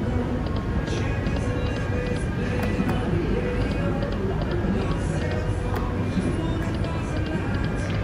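Dancing Drums Explosion video slot machine playing its electronic reel-spin tunes and chimes through about two spins, over a steady din of casino noise.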